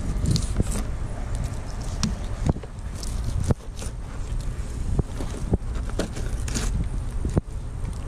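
Wind buffeting the microphone, with scattered light clicks and crunches from a fillet knife cutting along a northern pike's bones.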